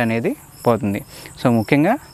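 A man talking, with crickets chirping in the background: short high chirps repeating through the pauses in his speech.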